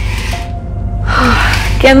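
A woman gasps in awe about a second in, a breathy intake of almost a second, over background music.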